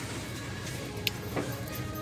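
Faint background music over a steady indoor hum, with one light click about halfway through.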